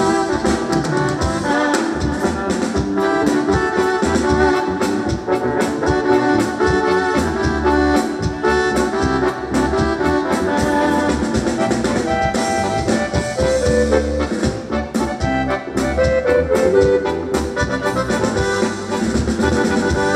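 Live band playing an instrumental opening through a PA, with keyboards, electric guitars, bass and drum kit; the music starts right at the beginning after a brief pause.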